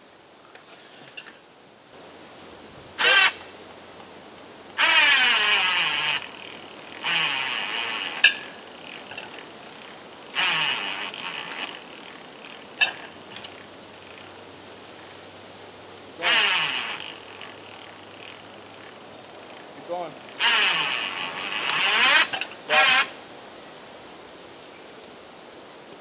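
Electric winch on a tree-puller frame running in about seven short bursts of one to two seconds each, pulling a felled tree, with a couple of sharp clicks between the bursts.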